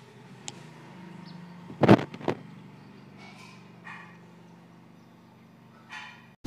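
Faint steady background hum, broken by two short, sharp sounds about half a second apart around two seconds in.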